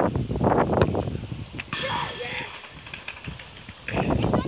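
Children's voices outdoors, then a sharp knock about a second and a half in, followed by a short hiss. After that it is quieter.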